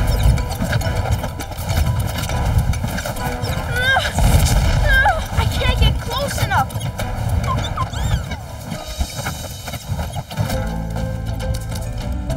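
Animated-cartoon action soundtrack: music over a dense low rumbling effect, with wordless cries and effort sounds from the characters, the loudest near the middle.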